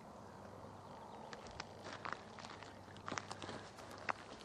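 Faint background noise with a scattering of soft clicks and ticks, a little busier about three seconds in.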